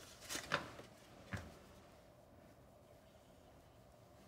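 Cardstock being handled: a couple of brief, soft paper rustles and a short tap in the first second and a half, then only faint room quiet.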